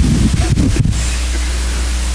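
Steady, loud hiss with a low hum underneath: noise from the recording or sound system during a pause in speech. A few faint murmurs come in the first second.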